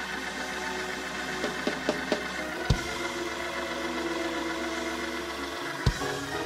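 Church keyboard music holding sustained chords over a low bass note that drops out near the end, with a few scattered hand claps from the congregation.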